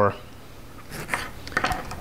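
A few light clicks and knocks of a kitchen knife and lemon pieces being handled on a wooden butcher-block counter, the knife set down on the board.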